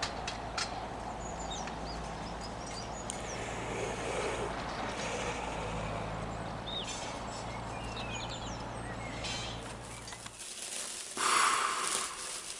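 Outdoor ambience of birds chirping over a steady low mechanical hum. Near the end it cuts to a small room where a lit sparkler fizzes and crackles loudly.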